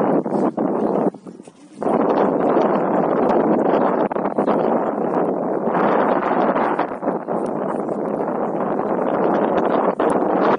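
Wind buffeting the camera's microphone: a dense, loud rushing noise that dips briefly about a second in, then carries on steadily.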